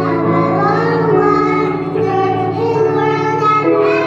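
A young girl and boy singing a slow song together into handheld microphones, amplified, accompanied by sustained chords on an electronic keyboard.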